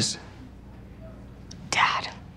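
The end of the spoken name "Liz", then a quiet pause over a low hum, then a short breathy, whisper-like voice sound near the end.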